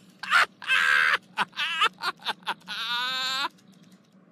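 A person's voice shouting in agitated bursts that the recogniser could not make out as words, ending in a long, wavering drawn-out cry that cuts off suddenly about three and a half seconds in.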